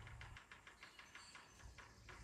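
Near silence, with a faint, even run of soft ticks at about seven a second.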